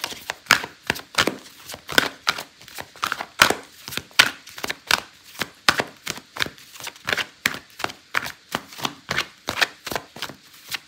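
A deck of cards being shuffled by hand: a steady run of short card slaps and flicks, about three a second.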